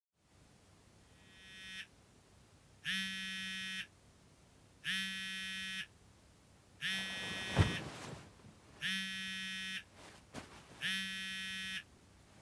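Smartphone alarm ringing: a repeating electronic beep, about one second on and one second off, the first one swelling in. A single thump about halfway through, amid some rustling.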